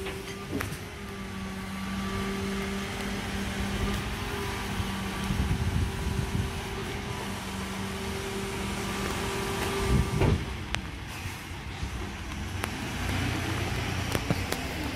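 Refuse truck's hydraulic bin lifter and power take-off running with a steady hum while a wheelie bin is lifted and tipped. A loud knock about ten seconds in, after which the hum stops and the truck drops back to a lower idle.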